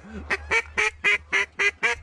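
Mallard duck call blown in a steady series of loud, evenly spaced quacks, about three or four a second, calling to ducks working the spread.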